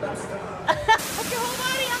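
Voices with two short loud cries in the first second, then an abrupt change to the steady rush of a waterfall pouring into a pool, with voices over it.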